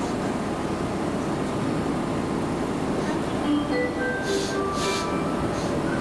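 Steady hum and hiss of an express train standing at a station platform with its doors open. About three seconds in, a short electronic chime melody of separate stepping notes starts over it.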